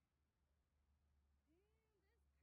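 Near silence, with one faint short call near the end that rises and then holds its pitch.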